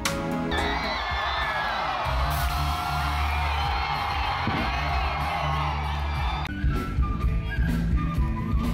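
Concert crowd cheering and whooping over held low notes from the band, then the band comes in with a drum beat about six and a half seconds in.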